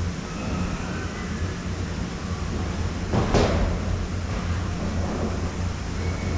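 Conveyor-belt lift of a summer tubing run, running with a steady low hum and echoing in a corrugated metal tunnel. About three seconds in there is a brief, louder burst of noise.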